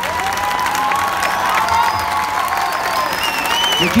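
A large seated audience applauding steadily, dense clapping, with voices calling out and cheering over it.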